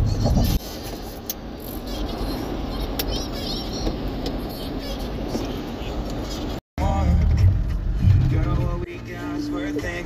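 Vehicle road noise from inside a car on a wet highway, a steady hiss of tyres on the wet surface. About seven seconds in it cuts to a different clip with voices or music.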